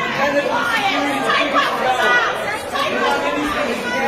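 A crowd of people talking and calling out over one another, a steady mass of overlapping voices with no single speaker standing out.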